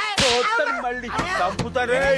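A sharp swishing hit sound effect for a blow in a film fight, about a quarter second in, followed by men crying out.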